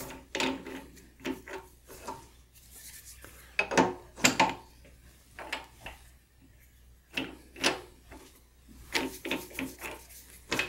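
Steel thumbwheel being unscrewed by hand from a milling machine's knee-crank shaft and the metal crank handle slid off: irregular metal-on-metal scrapes and clicks, loudest about four seconds in.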